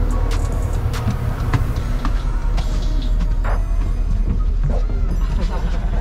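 Steady low drone of a road vehicle on the move, with background music and faint voices over it.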